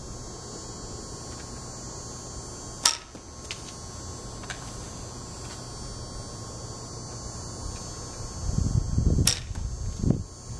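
Sharp clicks of wooden arrows knocking against the bow while it is handled and an arrow is nocked: one loud click about three seconds in, a few faint ones after it, and another loud click near the end, over a steady low hum.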